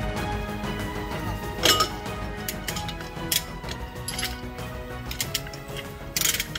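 Background music with scattered metal clinks and knocks from tools and parts being handled at a truck's rear wheel hub, the loudest about a second and a half in.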